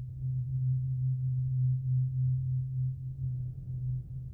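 A low, steady drone tone from the film's soundtrack, wavering slightly in loudness.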